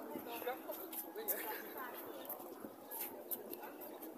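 Indistinct voices of people talking nearby, not close to the microphone, with a few light clicks.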